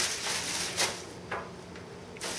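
Crinkly rustling of a baking tray's liner as cookies are picked up off it, followed by two short scraping rustles about a second apart.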